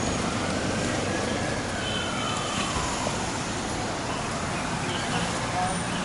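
A siren wailing slowly up and down, one rise and fall about every four to five seconds, over steady city traffic noise.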